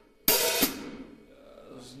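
Drumstick striking a hi-hat whose cymbals are held open, a sharp hit about a quarter second in, perhaps a second one just after, ringing out and fading within about a second.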